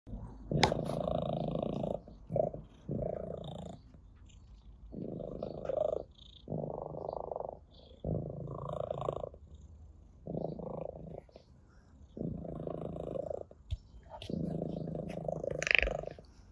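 Orange tabby cat purring while being stroked, in stretches of about a second with short breaks between them, with a sharp tap about half a second in.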